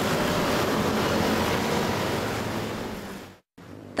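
Street traffic: motor scooters and cars passing close by, making a steady rush of noise. It fades and cuts off briefly about three and a half seconds in, then returns more quietly.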